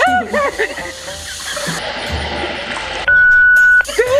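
Edited comedy soundtrack over background music: a man laughs with a rushing hiss under the first second and a half. Just past the three-second mark comes a single steady beep tone, the loudest sound, lasting under a second.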